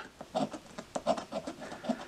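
A coin scratching the latex coating off a scratch-off lottery ticket in a quick series of short, irregular strokes.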